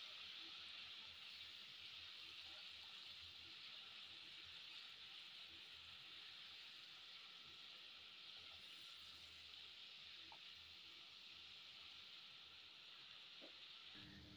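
Faint, steady sizzle of onions and ground spices frying in ghee in a pan.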